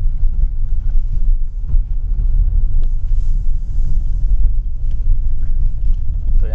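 Steady low rumble of road and engine noise inside the cabin of a Hyundai Alcazar SUV on the move.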